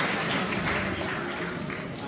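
Audience applause in a large hall, tapering off.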